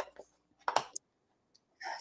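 A few faint clicks and a brief rustle from handling a plastic stamp-positioning platform on a craft table.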